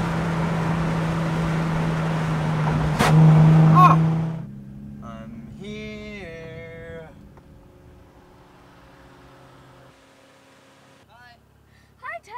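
Infiniti G35 coupe's 3.5-litre V6 droning steadily with road and wind noise inside the cabin at speed. It grows louder after a click about three seconds in, then cuts off suddenly a little past four seconds, leaving a faint engine hum and a short voice-like sound around six seconds in.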